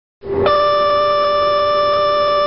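Boeing 737NG landing gear warning horn sounding a steady tone, which starts a moment in and settles onto a slightly higher pitch shortly after. It warns that the landing gear is not down and locked with the airplane near the ground.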